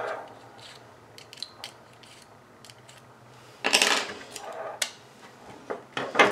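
Faint handling sounds from a Sena headset's clamp mount and a small Allen key being worked: scattered small clicks and taps, with a short rustling scrape a little past halfway.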